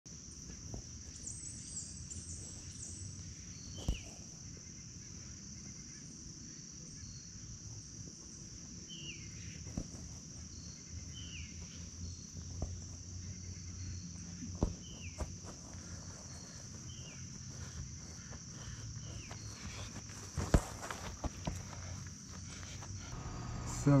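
Steady high-pitched chorus of crickets, with a few sharp thuds of a soccer ball being kicked on grass, the loudest one late on.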